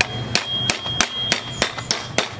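Hammer strikes on a BMX frame's bottom bracket, driving bottom bracket bearings into the shell: sharp metal taps at about three a second, over a thin high ringing tone.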